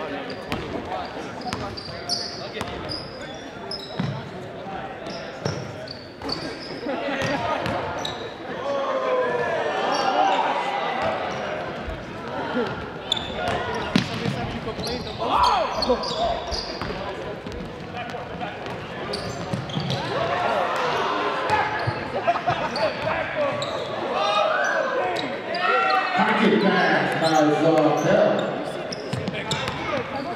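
Basketball being dribbled and bouncing on a hardwood gym floor during play, with spectators' voices and occasional shouts echoing around the hall.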